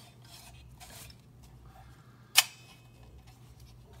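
Hands handling a plastic Sawyer's View-Master stereo viewer: faint rubbing and shifting, with one sharp click a little past halfway.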